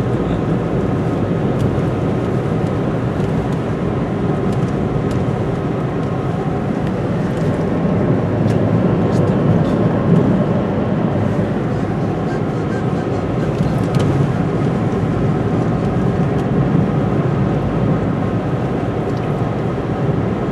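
Steady road and engine noise heard from inside a moving car's cabin: a low, even rumble with faint scattered ticks.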